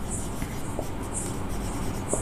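Marker pen writing on a whiteboard: a few short, high-pitched strokes about a second apart.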